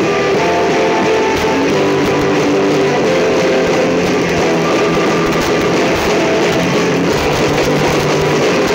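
Ska band music, loud and steady, led by strummed electric guitar over bass.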